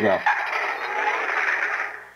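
Hasbro Iron Man replica helmet's built-in electronic sound effect playing through its small speaker: a steady, hissing whoosh that cuts off abruptly near the end.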